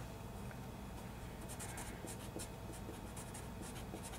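Felt-tip marker writing on paper, a run of short strokes that come mostly from about a second and a half in, over a low steady hum.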